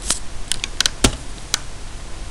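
Computer keyboard being typed on: about six short key clicks at uneven spacing, entering a number into a form field.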